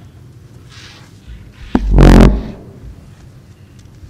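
Microphone handling noise through the hall's PA: a sharp click about two seconds in, then a loud, heavy thump and rumble lasting about half a second, amid faint room tone.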